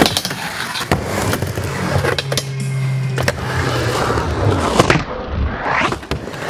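Skateboard rolling on a mini ramp, with sharp clacks of the board and trucks hitting the coping. The clip is speed-ramped, so the middle part plays slowed down and lower in pitch, because pitch preservation is switched off.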